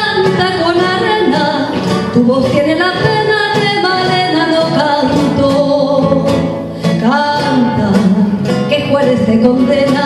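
A woman singing a tango in long held notes, accompanied by a strummed acoustic guitar. About seven seconds in, she breaks briefly and starts a new phrase.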